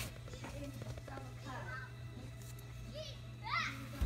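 Faint, quiet children's voices and murmuring, with a high rising child's call near the end, over a steady low hum.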